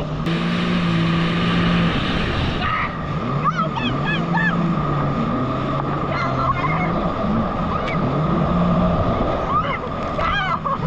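Jet ski engine running at speed, with a low drone that rises and falls in pitch as the throttle changes, over rushing spray and wind. The riders' voices call out now and then.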